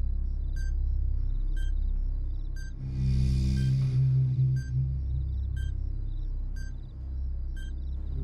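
Short electronic beeps about once a second, like a bomb's countdown timer, over a steady low rumbling drone of dramatic score. A rushing swell of noise rises and fades about three seconds in.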